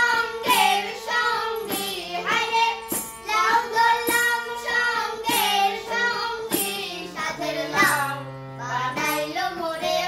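A woman and a child singing a Bengali folk song together to a harmonium playing steady held chords. About eight seconds in, the voices pause briefly while the harmonium plays on alone.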